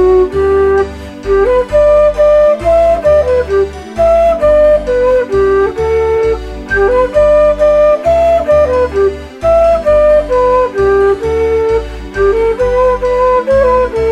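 A flute-like woodwind instrument playing a folk melody, the tune of the song as an instrumental break between verses, over a low rhythmic bass accompaniment.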